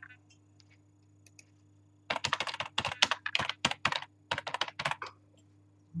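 Typing on a computer keyboard: a quick run of keystrokes starting about two seconds in and lasting about three seconds, with a short pause near the end.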